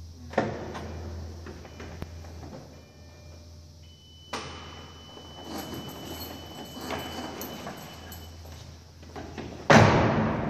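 Lamborghini Gallardo Spyder's driver door opened with a click about four seconds in, with rustling and knocks as the driver climbs out. A steady high tone sounds while the door stands open. Near the end the door is shut with a loud slam, the loudest sound here.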